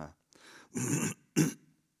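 A man clearing his throat and coughing: a longer rasp just under a second in, then one short, sharp cough, the loudest sound.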